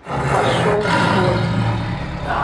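Tiger growling: one long growl that starts abruptly.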